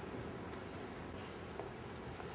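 Quiet low-level room tone in a large hall, with a few faint clicks and no clear tone.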